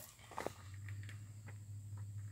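Faint knocks and rustle of a handheld phone being moved about, over a low steady hum.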